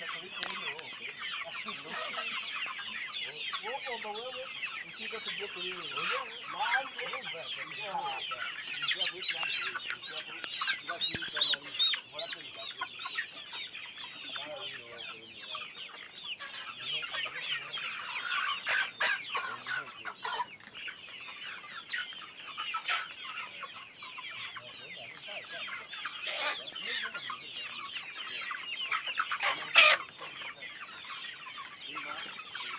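A large flock of chickens clucking and calling continuously, many birds at once in an overlapping chatter. A brief loud sharp noise cuts through just before the end.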